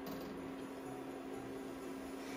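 A clear spirit poured from a glass bottle into a metal cooking pot: a soft, steady trickle under a steady low hum.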